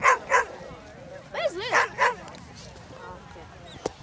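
Dog barking: two sharp barks, then a quick run of about four more about a second later.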